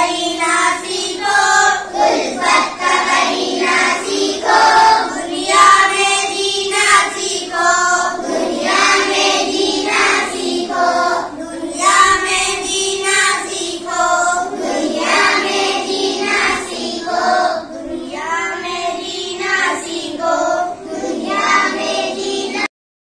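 A group of young boys singing an Urdu poem together in unison.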